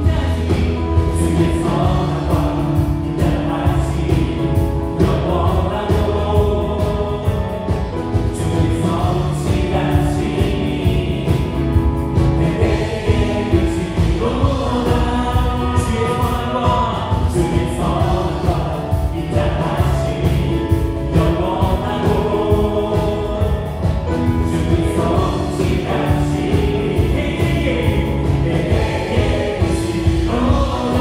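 Live church worship band playing a gospel praise song: electric guitar, bass, keyboards and drum kit, with voices singing along.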